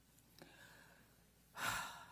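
A woman's quick intake of breath into a podium microphone near the end, after a near-silent pause with a faint click.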